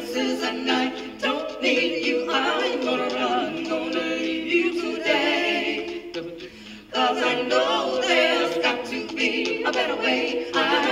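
All-female a cappella vocal ensemble singing in layered harmony, with no instruments. The voices drop away briefly about six seconds in, then come back in together.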